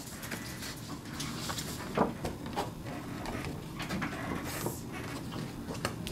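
Office background noise with scattered faint clicks and one sharper knock about two seconds in.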